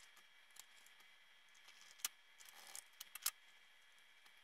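Faint, scattered clicks and light taps as small plastic and metal parts are handled: a screwdriver working the screws of a Roomba's circuit board and wire connectors being pushed back on. The sharpest clicks come about two seconds in and as a pair just after three seconds.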